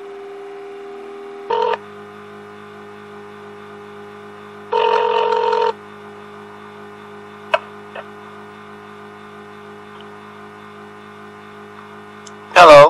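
Telephone line ringing while a call is put through after an automated menu: a steady tone for the first second and a half, then a short ring and a ring about a second long, over a steady low line hum. Two faint clicks come near the end.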